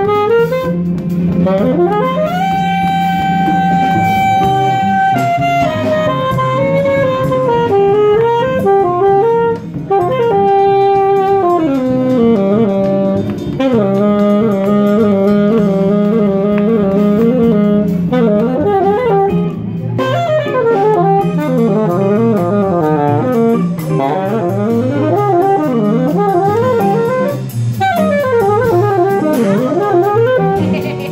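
Live jazz jam: a saxophone plays a solo line of long held notes, pitch bends and quick runs over a low sustained band accompaniment.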